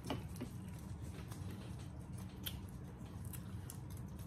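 Close-up eating sounds of two people chewing a shrimp and noodle dish: soft wet mouth noises and scattered sharp clicks and smacks, over a low steady hum.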